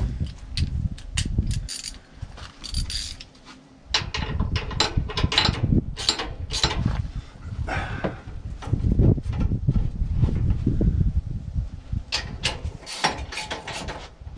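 Irregular clicks, clanks and knocks of hand-tool work on the metal frame of a Toro TimeCutter riding mower, with uneven low rumbling handling noise between them.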